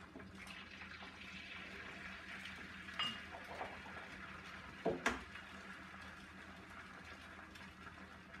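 Eggs frying on an electric griddle, a steady soft sizzle, with two sharp cracks about three and five seconds in, the second louder, as eggshells are broken open.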